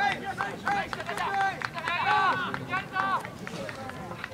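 Several voices shouting short, high-pitched calls across a soccer pitch in quick succession, overlapping one another.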